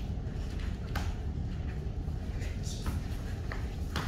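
A few soft thuds and scuffs of feet and bodies on a wooden studio floor as dancers perform a partner lift, over a low steady room hum.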